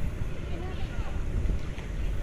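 Wind buffeting the microphone at the sea's edge, a steady, uneven rumble, with faint short rising and falling calls or voices above it.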